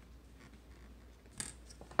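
Hollow-braid rope and a thin steel-wire splicing tool rubbing as the tool draws the rope's tail through the braid. There is a short scratchy rustle about one and a half seconds in, and another right at the end.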